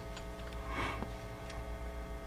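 Thin Bible pages being turned at a lectern: a brief papery rustle about a second in and a few light clicks, over a steady electrical hum.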